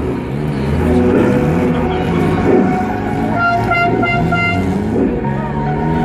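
A vehicle horn tooting in a quick run of short beeps about halfway through, over music and a steady low rumble.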